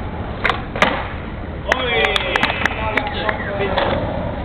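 Skateboard rolling on a hard court surface, with two sharp clacks of the board within the first second. Voices join from about halfway in.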